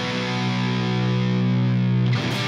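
Stratocaster-style electric guitar: one power chord struck at the start and left to ring steadily.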